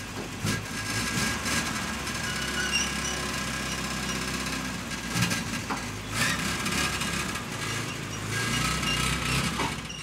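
Engine of an ARO off-road fire vehicle running steadily as it drives out, towing a fire-pump trailer.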